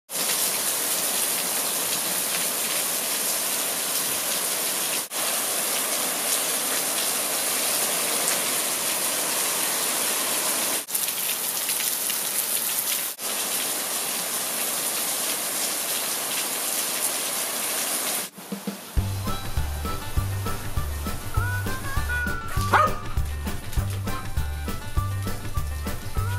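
Heavy rain pouring down steadily on leaves and wet pavement. About 18 seconds in it gives way to background music with a steady beat, and a dog barks once near the end.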